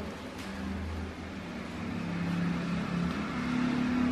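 A low, steady engine-like hum that slowly grows louder, with faint rustling of dry leaves being handled.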